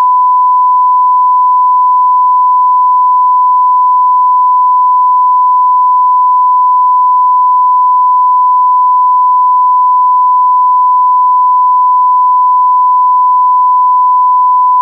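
A 1 kHz broadcast line-up tone, the reference tone that goes with colour bars: one steady, unwavering loud beep at a single pitch.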